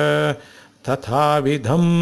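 A man chanting Sanskrit verse in slow, even recitation. A phrase ends just after the start, and after a brief pause the next begins and settles into a long held note.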